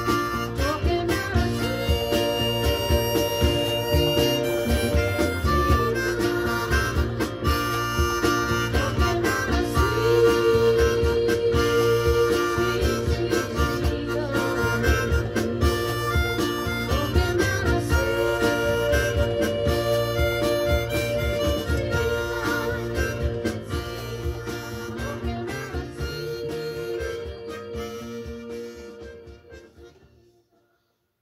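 Harmonica played cupped against a bullet microphone, holding long notes with bends over a backing track with a steady beat. The music fades out over the last few seconds.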